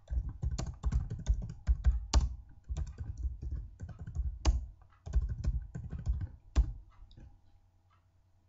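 Typing on a computer keyboard: a quick, uneven run of keystrokes for about seven seconds, ending with a single louder stroke before the typing stops.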